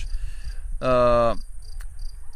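Crickets chirping faintly in short, evenly repeated pulses over a low rumble. A man's single drawn-out, falling 'uh' comes about a second in.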